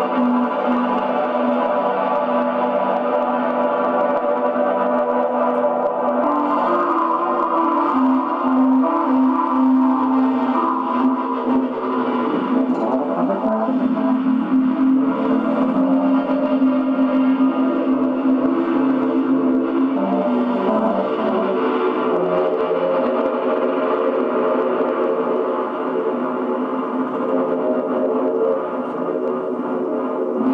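Minimal music: layered held notes sounding together at a steady level, with the lower notes shifting to new pitches every few seconds.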